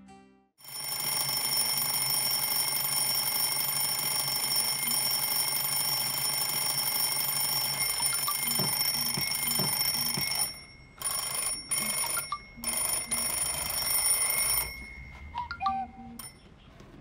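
Twin-bell mechanical alarm clock ringing: it starts suddenly about half a second in and rings steadily for about ten seconds, then comes in several short bursts before stopping a little over a second before the end.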